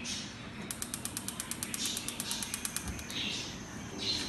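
Gas stove's electric spark igniter clicking rapidly, about a dozen clicks a second for about two seconds, as the burner knob is turned to light the burner.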